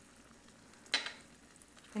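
Silicone spatula stirring beans and tomato sauce in a skillet, with one short sharp scrape about a second in, over a faint steady sizzle of the sauce simmering.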